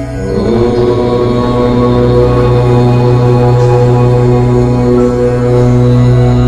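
A chanted 'Om' mantra begins just after the start and is held as one long, steady, deep tone over soft background music.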